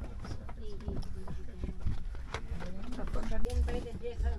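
Indistinct voices in an aircraft cabin over a low, steady rumble, with a few sharp clicks.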